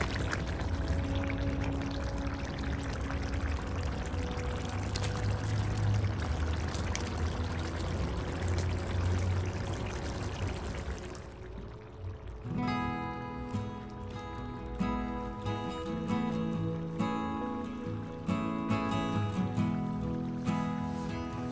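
Tomato sauce frying in a clay pot gives a steady sizzling hiss as shredded salt cod is stirred in. The hiss fades about two-thirds of the way through, and plucked guitar music takes over.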